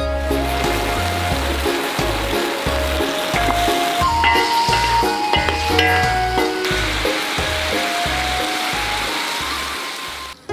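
Chicken with shiitake mushrooms and green peppers sizzling in sauce in an iron wok over a wood fire. The sizzle thins a little after about two thirds of the way through. Background music with a steady beat plays underneath.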